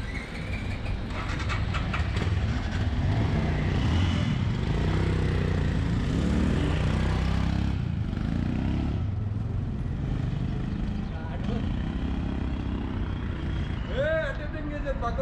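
Royal Enfield Himalayan's single-cylinder engine pulling away and accelerating on the road, its pitch rising with each pull and dropping at the gear changes, over wind noise.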